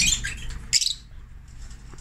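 African lovebirds squawking: a burst of high, chattering calls that dies away a little under a second in, leaving the birds quieter.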